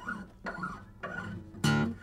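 Faint handling of a newly fitted string on a steel-string acoustic guitar as it is stretched, then one plucked note with a sharp attack about one and a half seconds in, sounded to recheck the string's pitch after stretching.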